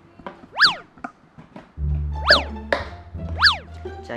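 Comic background music with three quick swooping sound effects that fall steeply in pitch, and a bass line that comes in about halfway through.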